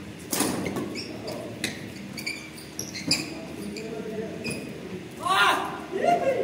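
Badminton racket smashing a shuttlecock about a third of a second in, followed by a few lighter sharp hits, with players' voices in a large echoing hall, loudest near the end.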